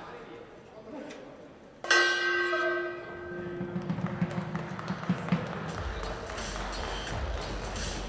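End-of-round bell struck once about two seconds in, ringing out and slowly fading, signalling the end of round one. Background music with a low pulsing beat then comes in.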